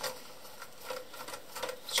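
A few light clicks and taps of hands handling the plastic and metal of a ControlLogix chassis power supply, spaced out, with the clearer ones about a second in and near the end.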